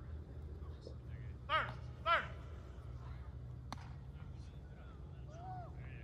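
Two short shouted calls, about a second and a half in and again half a second later, over a steady low hum. A single sharp crack follows near the four-second mark.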